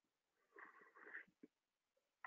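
Near silence, with a faint breath from the presenter about half a second in.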